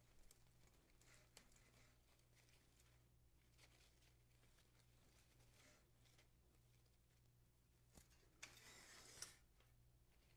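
Near silence: room tone with a low steady hum and faint rustles and clicks from artificial florals and a grapevine wreath being handled. Near the end comes a brief louder rustle as the wreath is turned on the table.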